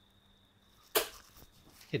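A steel-tip dart striking a Winmau Blade 5 bristle dartboard: one sharp thud about a second in, with a short decay.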